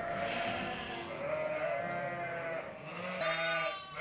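Sheep bleating in a lambing shed: one long, drawn-out bleat over the first three seconds, then a shorter bleat near the end.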